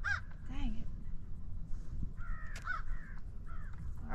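Birds cawing several times, in a run of harsh calls starting about two seconds in, over a steady low rumble.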